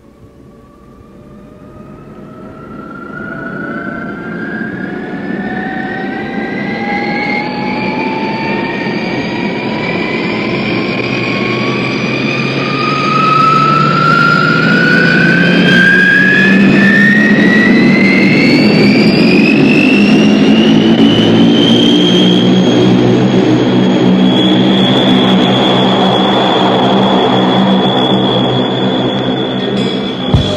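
Recorded jet-engine sound effect: it fades in from silence, with several whines rising steadily in pitch and a growing rush, until it levels off loud and steady about two-thirds of the way through.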